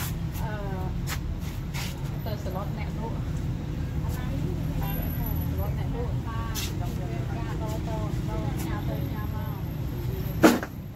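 Voices talking in the background over a steady low rumble, with a few short clicks.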